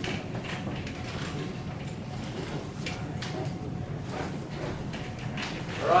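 Whiteboard marker strokes and light taps against the board, a few short scratchy sounds over a steady low room hum.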